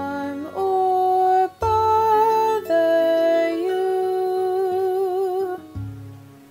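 Music: a voice holding long sung notes that step to a new pitch every second or so, with vibrato on the last long note, over a low sustained accompaniment.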